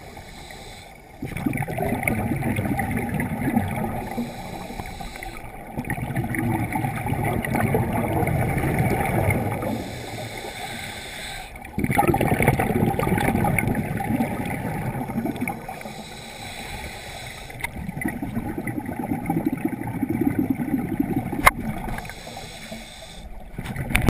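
Scuba regulator exhaust: a diver's exhaled bubbles rumbling and gurgling underwater in four bursts of three to four seconds, about every six seconds, with quieter breathing between them.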